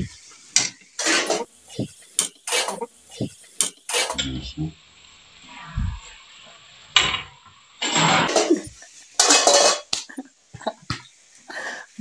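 A metal spoon knocking and scraping against a metal kadai while stirring masala, with water poured into the pan. It comes as a string of short, irregular clanks.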